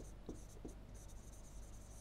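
Faint scratching and a few light taps of a stylus writing on a tablet, over a low steady hum.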